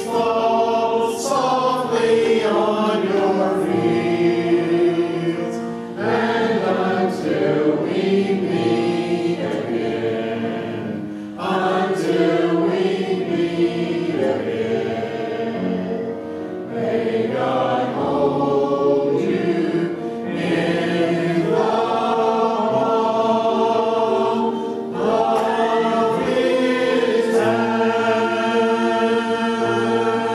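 A church congregation singing a hymn together, in long held phrases with short breaks between them every few seconds.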